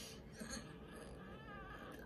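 A newborn baby whimpering faintly, a thin, wavering cry that starts about half a second in and lasts just over a second.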